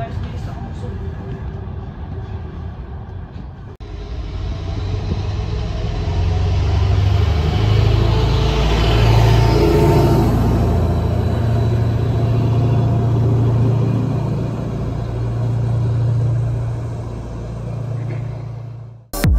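Train running on its rails, heard from on board. After a cut, a diesel multiple unit runs close past a station platform, its engine rumble building to a loud peak and holding before easing off near the end.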